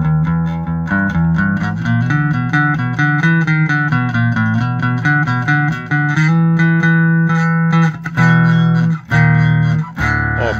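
1980 B.C. Rich Mockingbird electric bass played with one pickup switched out of phase: a line of plucked notes changing about twice a second, then longer held notes over the last few seconds.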